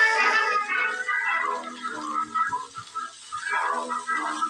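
Old vintage radio on a nightstand playing music with no bass, held notes at first that break into shorter phrases after about a second.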